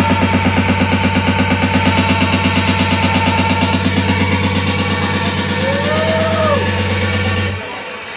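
Electronic dance music from a DJ set played loud over a club sound system: a heavy, steady bass under a fast, even pulsing rhythm. The music cuts out suddenly near the end.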